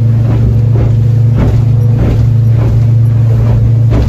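Boat engine droning steadily, heard from inside the cabin while the boat runs through choppy water, with water noise and irregular thumps of the hull hitting the waves.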